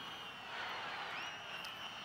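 Faint stadium ambience from the match broadcast: a low, even background of crowd and pitch sound with a few faint high calls.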